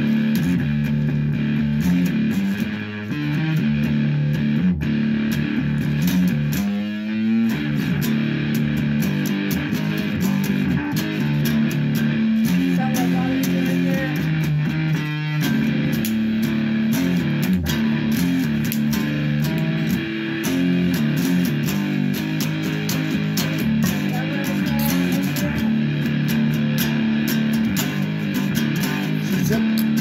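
Electric guitar played continuously, a run of held notes and chords that change every second or so.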